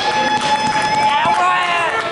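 A man's voice calling out over crowd chatter in a large hall, with one long held tone in the first second or so that bends upward near its end.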